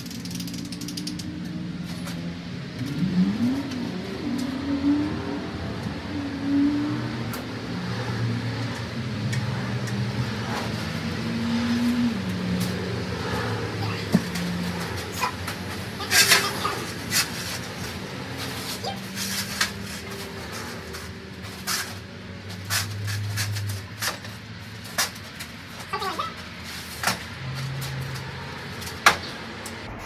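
Scattered clicks and knocks from a large cantilever patio umbrella's metal pole, frame and cross-base stand as it is handled and adjusted, with a cluster of sharp clicks about halfway through. Under them runs a continuous low hum that shifts in pitch.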